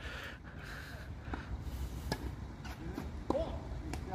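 A tennis rally on a hard court: a few sharp pops of the ball off racket strings and the court surface, spaced about a second apart, faint.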